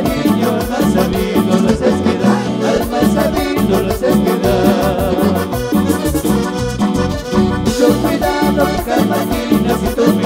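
Live Peruvian cumbia band playing an instrumental passage: amplified keyboard melody over bass and a steady dance beat, without lead vocals.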